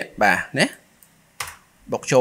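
A single computer keyboard keystroke, a sharp click about one and a half seconds in, with a fainter tick just before it, between stretches of speech.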